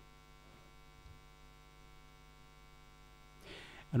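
Faint, steady electrical mains hum with many evenly spaced overtones. A man's voice starts a word at the very end.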